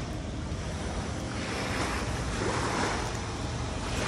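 Small waves washing onto a sandy shore, with wind rumbling on the microphone: a steady rushing noise that swells briefly past the middle.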